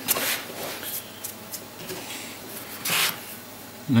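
Handling noises as a metal-framed Delft clay casting mold is worked on a workbench: a short rustling scrape at the start, a few faint clicks, and another brief rustle about three seconds in.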